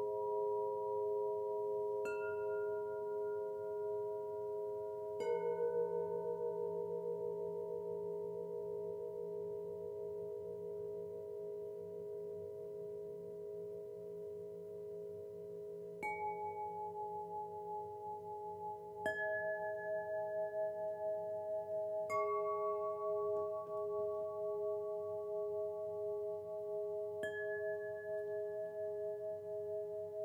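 Solfeggio chimes struck one at a time, six strikes spaced a few seconds apart, each leaving a clear tone that rings on for many seconds over the held, slowly pulsing tones of the earlier strikes.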